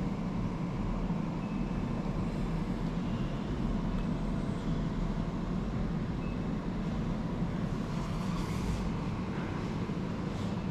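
Steady low rumble of indoor room noise with no distinct events, with a couple of faint brief sounds near the end.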